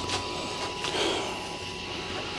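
Clothes being shaken out of a mesh pop-up laundry hamper: soft rustling of fabric and mesh with a couple of light clicks from the hamper's flexible frame.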